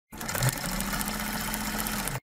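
A sewing machine stitching, used as a short intro sound effect: it starts suddenly and runs steadily, with a steady low tone underneath.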